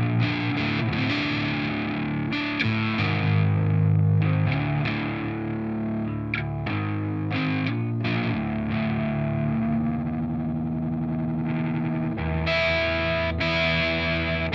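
Distorted Explorer-style electric guitar playing heavy riffs, with choppy picked chords and short stops. A chord is let ring for a few seconds past the middle, then a brighter, higher passage follows near the end.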